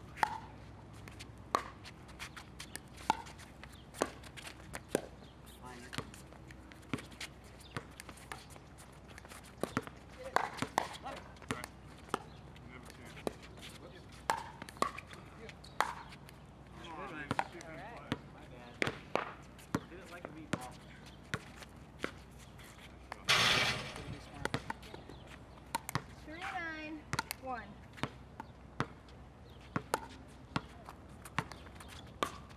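Pickleball paddles striking a plastic pickleball in rallies: sharp pops about one a second in runs with short gaps, with players' brief voices between them. A second-long burst of noise comes about three quarters of the way through.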